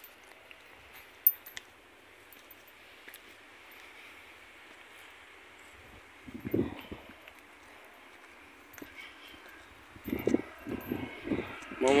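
Someone climbing stone steps, heard as faint muffled thuds about six and a half seconds in and again near the end, over a steady quiet outdoor hiss. A few sharp clicks sound in the first two seconds.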